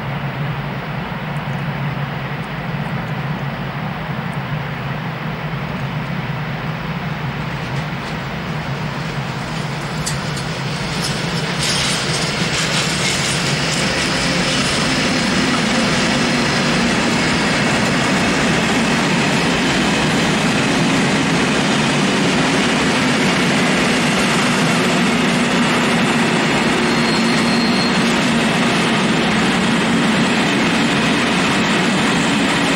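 Freight train of tank wagons rolling past on the tracks, with steady wheel-on-rail noise. It grows louder about eleven seconds in, with a few sharp clicks, as an electric locomotive passes close. A brief high squeal comes near the end.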